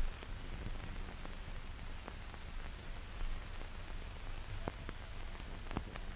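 Hiss and faint crackle of an old film soundtrack: a steady noise with a low hum and a few scattered faint clicks.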